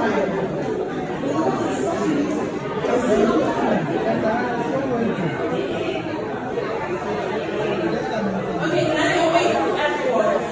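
Many people talking at once: continuous, overlapping crowd chatter with no single voice standing out.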